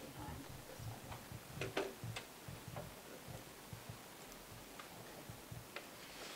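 Faint, scattered clicks and rustles of paper sheets being handled and pages turned, with a short cluster of sharper ticks about two seconds in.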